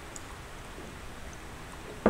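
Coffee maker brewing: a steady, even hiss with no breaks.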